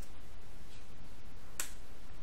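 A single sharp click of a computer keyboard key about one and a half seconds in, from a password being typed, over a steady low background hum.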